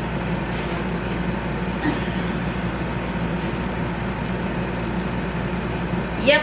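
A steady mechanical hum with hiss, unchanging throughout, of the kind a fan or air conditioner running in a room gives.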